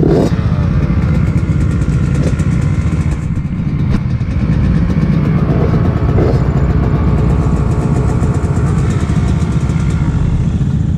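Dirt bike engine idling steadily close to the microphone, with other trail bikes and an ATV running nearby.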